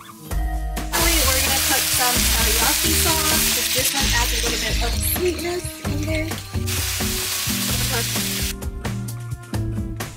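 Eggplant slices and shrimp patty pieces frying in oil in a nonstick pan, sizzling loudly as they are stirred with a silicone spatula. The sizzle starts about a second in and stops shortly before the end, with background music underneath.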